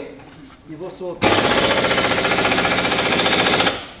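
Pneumatic impact wrench hammering on a bolt at the car's wheel in one loud, fast-rattling burst of about two and a half seconds that starts suddenly about a second in.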